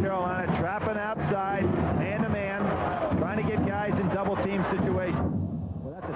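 A television play-by-play commentator talking over the steady noise of an arena crowd at a basketball game. The voice breaks off briefly about five seconds in.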